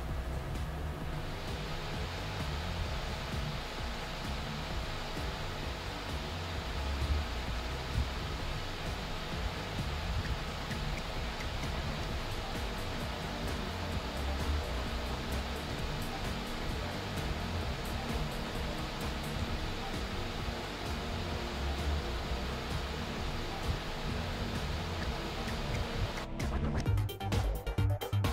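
EVGA GeForce GTX 590 graphics card's cooling fan running at its 95% maximum setting: a steady rush of air that grows louder and brighter about a second in as the fan spins up.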